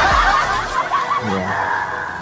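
A man snickering, a short run of quiet laughter that trails off after about a second and a half.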